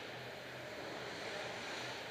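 Steady ice rink ambience during a hockey game: a constant hollow noise of the arena hall with skates scraping on the ice, and no sharp impacts.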